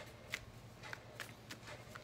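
Tarot cards being handled and shuffled, heard as a few faint, short card flicks.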